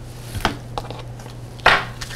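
Tarot cards being handled at a table: a light tap as a card lands about half a second in, a fainter tap after it, then a short rustle of cards near the end, over a steady low hum.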